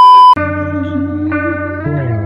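A loud, steady, high-pitched TV test-pattern beep, the tone that goes with colour bars, cut off sharply about a third of a second in. Then comes music: a held note over a steady low bass.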